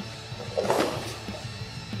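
Quiet background music, with a short burst of noise just under a second in.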